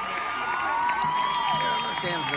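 Stadium crowd applauding and cheering, with several long high cries that slide up and down in pitch.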